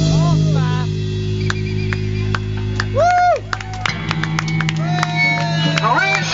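Live rock band letting a held bass and guitar chord ring, with the singer's voice calling out in short rising-and-falling phrases over it.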